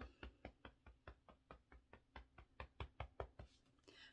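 Faint, rapid fingertip tapping on the body in an EFT tapping round, a steady run of light taps at about five a second.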